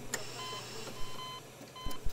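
Hospital bedside monitor alarm beeping: a short electronic tone repeating about every three-quarters of a second, with a couple of light knocks, the loudest just after the start and near the end.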